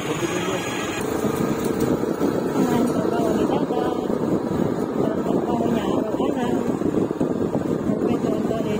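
Indistinct talking over the steady running and road noise of a moving vehicle.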